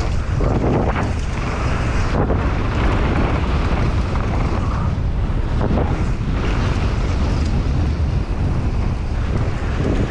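Wind buffeting the microphone of a camera on a mountain bike riding fast downhill, a loud steady rush. Tyres roll over dirt and grass, with a few short knocks as the bike goes over bumps.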